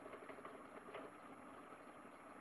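Near silence: faint room noise with a couple of faint clicks, one about a second in.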